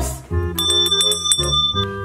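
A bell rung rapidly, a quick run of strikes with a high ringing tone lasting a little over a second, from about half a second in, over background music.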